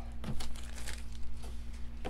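Plastic wrapping crinkling and rustling as it is handled, in a dense run of small irregular crackles.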